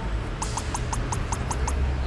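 Cartoon sound effect of a small larva scurrying: a quick run of about eight short, squeaky pips, about five a second, over a low steady background.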